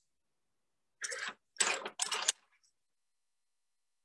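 A paintbrush being cleaned: three quick swishing strokes, a little over a second in.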